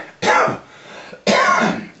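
A man coughing to clear his throat: two coughs, a short one just after the start and a longer one over a second in.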